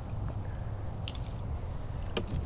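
Water dripping and splashing as a large bass is lifted out of the water by hand, with a couple of short wet ticks about a second in, over a steady low rumble.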